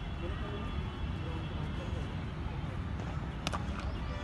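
Open-air cricket-ground ambience: a steady low rumble with faint voices of players in the distance, and one sharp crack about three and a half seconds in, followed by a weaker click.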